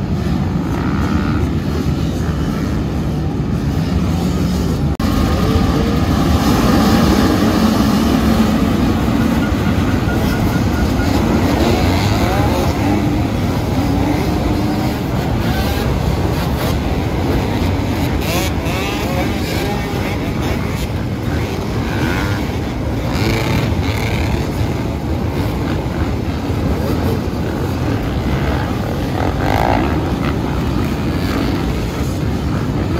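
Dozens of off-road dirt bikes launching from a mass race start and accelerating away, a dense wall of overlapping engine noise with many revs rising and falling as riders shift and open the throttle.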